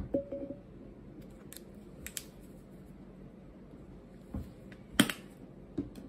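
Scattered small clicks and taps from a plastic spice container being handled and shaken over a pot of mashed potatoes, with one louder knock about five seconds in.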